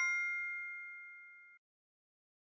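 The ringing tail of a two-note 'correct answer' ding sound effect, fading steadily on a couple of clear tones and cutting off suddenly about a second and a half in.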